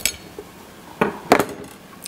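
Large kitchen knife cutting through a rack of boiled-and-smoked pork ribs, with two sharp knocks close together about a second in as the blade goes through the rib bone.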